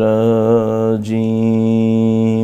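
A man's voice chanting an Islamic devotional recitation in long, steady held notes, with a short break about halfway through.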